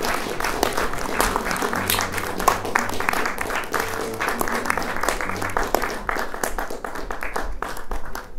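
Theatre audience applauding: dense, continuous clapping, with music playing underneath.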